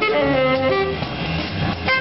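Live jazz: a saxophone plays held, horn-like notes over plucked double bass, with a drum kit behind.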